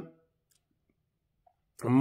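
A man's speech stops just after the start, leaving a pause of near silence with a faint click or two. His voice starts again near the end.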